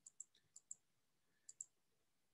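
Faint computer mouse clicks in three quick pairs, undoing a mistaken stroke on a digital drawing.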